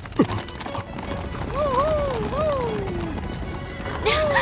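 Hoofbeats of a band of galloping horses under dramatic film-score music. A sharp falling swoosh sounds about a quarter second in, and from about halfway through a pitched line rises and falls three times.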